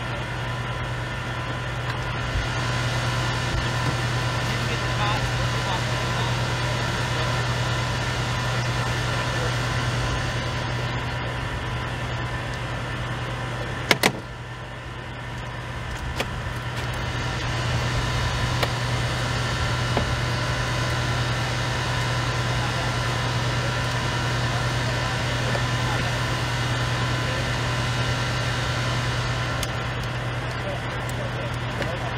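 Steady low hum of an idling vehicle engine, with one sharp click about halfway through, after which the hum briefly drops and comes back.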